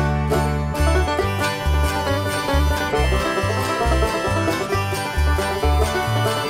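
Bluegrass band playing an instrumental passage with no singing: banjo, acoustic guitar, mandolin and electric bass, over a regular bass line.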